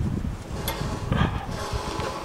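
Short mechanical clicks and rubbing from a Gilson garden tractor's parking brake linkage being tried, twice, over a low rumble. The brake does not hold.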